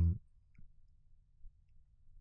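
A spoken word trails off. Then a faint low hum with a couple of faint computer mouse clicks, the first about half a second in.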